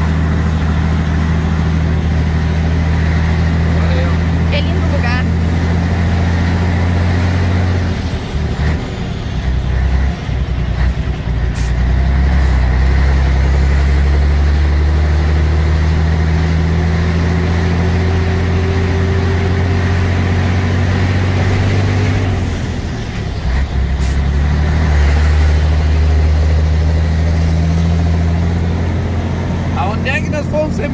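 Scania 113H truck's 11-litre straight-six diesel engine running under way, heard from inside the cab as a loud steady drone. The engine note drops away briefly twice, about eight seconds in and again about twenty-two seconds in, then picks up again.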